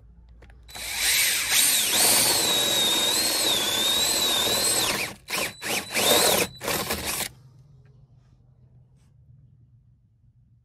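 Cordless drill boring a hole through a timber wall top plate. It runs steadily for about four seconds with a wavering whine, then gives a few short bursts as the bit breaks through, and stops about seven seconds in.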